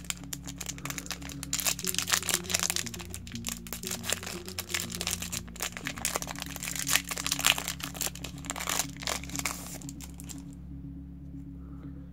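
Foil booster-pack wrapper crinkling and tearing as it is opened by hand, a dense crackle that stops about ten seconds in, over background music.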